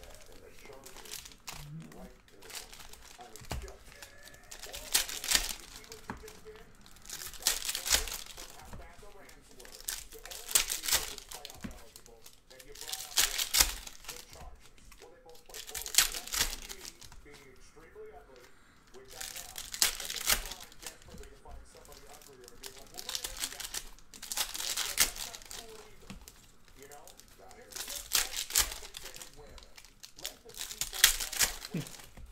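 Trading card pack wrappers being torn open and crinkled, one pack after another, in short crinkly bursts every few seconds.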